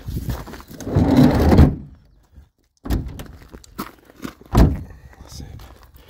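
Camera-handling rustle and knocks from the camper's interior fittings. The sound cuts out completely for under a second, then a few light clicks and one sharp thunk follow about four and a half seconds in.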